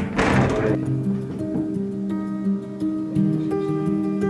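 Acoustic guitar music: single plucked notes ringing and overlapping.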